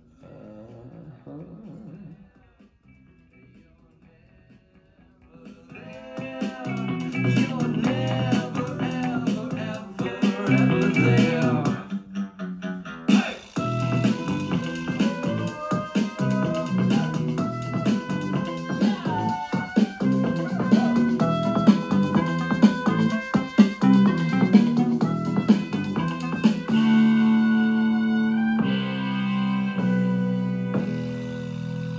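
A song played through a pair of 5.25-inch three-way speakers built into a wooden mantle-clock cabinet, driven by a small 3-watt Bluetooth amplifier. It plays quietly for the first few seconds, then gets much louder about six seconds in as the volume is turned up.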